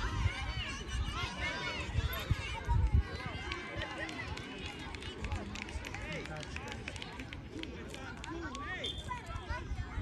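Scattered voices calling out at a distance across a youth soccer field, high children's voices among them, over a low, uneven rumble of wind on the microphone that swells about three seconds in.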